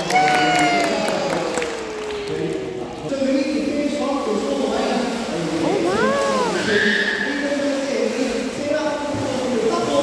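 Spectators' voices and exclamations: a long falling "ooh" near the start and a rising-then-falling "whoa" about six seconds in, over general chatter, while a sea lion swims fast and splashes through the pool.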